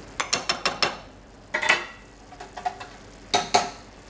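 A cooking utensil clicking and scraping against a frying pan as simmering cream sauce is spooned over hamburg steaks: a quick run of clicks in the first second, another short burst halfway, and two loud knocks near the end.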